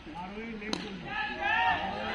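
A single sharp crack of a cricket bat striking the ball about three quarters of a second in, followed by players shouting.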